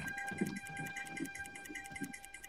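Faint background: a steady high whine with a few soft, short low sounds.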